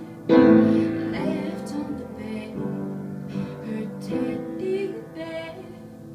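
Upright piano chords played by hand, with a woman singing softly over them; a new chord is struck about every second and a half.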